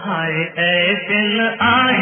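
Hindi film song playing: a voice singing melodic phrases over instrumental accompaniment, with short breaks between phrases.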